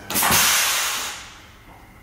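A burst of hissing noise that starts suddenly and fades away over about a second and a half.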